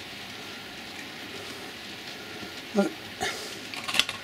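Steady rushing hiss of a model railway freight train running along the layout's track, with a brief murmur of a man's voice about three-quarters of the way through.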